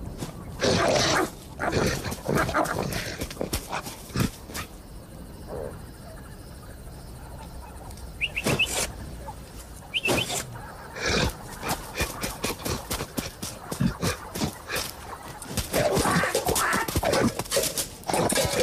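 Cartoon soundtrack of animal voice effects: a cartoon lion's growls and grunts in irregular loud bursts at the start and again near the end. In a quieter stretch in the middle there are two quick, high bird chirps.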